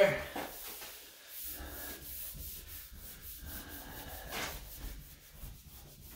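Hands rubbing and pressing over a tub surround panel to stick it to the glued wall: uneven scuffing strokes with pauses between them.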